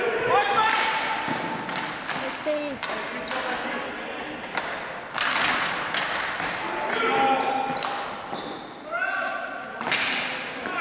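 Ball hockey play in an echoing gymnasium: repeated sharp clacks of sticks and the ball hitting the wooden floor and boards, sneakers squeaking on the floor, and players shouting.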